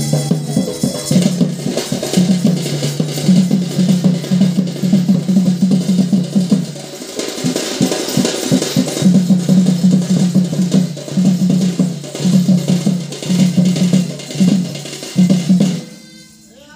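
Folk drums beaten in a fast, steady rhythm to accompany a stick dance. The beat eases off about seven seconds in, picks up again about two seconds later, and stops sharply at the end.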